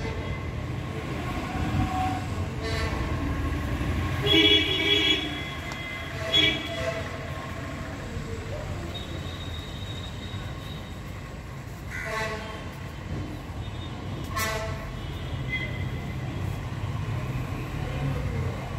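Horn blasts over a steady low rumble, loudest about four to five seconds in, with a short blast around six and a half seconds and fainter ones later.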